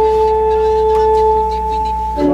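Church organ holding soft, steady sustained notes, a held chord that ends near the end, as the introduction to the sung acclamation after the consecration.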